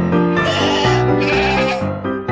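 A goat bleating twice in quick succession, over background piano music.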